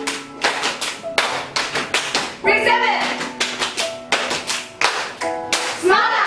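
A small group of people clapping their hands together in a quick rhythm, about four to five claps a second, with voices calling out briefly about halfway through.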